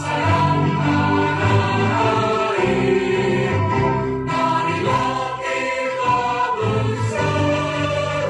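A choir singing with instrumental accompaniment, in long held chords that run on without a break.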